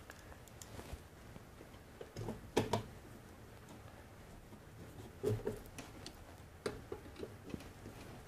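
Faint, scattered small clicks and taps of a screw and washer being handled and set against the steel brace of a recessed-light can, with a short louder burst about two and a half seconds in and a run of clicks near the end.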